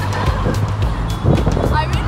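Auto-rickshaw engine running with a steady low drone as it drives along, with music and a brief voice over it.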